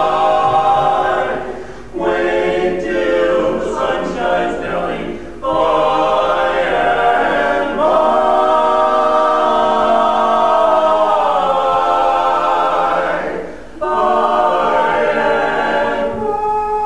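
Male barbershop quartet singing a cappella in four-part close harmony (tenor, lead, baritone, bass), holding sustained chords with three short breaks between phrases. A long chord held through the middle slides down in pitch before the next phrase.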